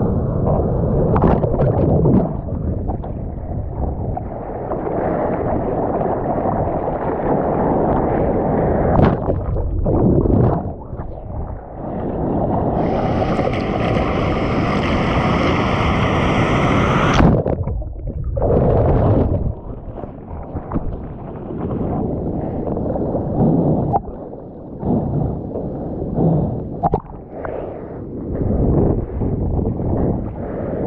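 Seawater rushing and sloshing around a GoPro camera in the surf, dull and muffled, rising and falling in uneven surges, with a brighter hiss for about four seconds in the middle.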